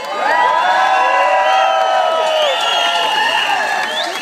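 Large outdoor crowd cheering and whooping, many voices shouting at once; it swells just after the start and dies away near the end.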